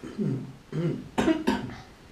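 A man clearing his throat, then coughing twice in quick succession a little past the middle.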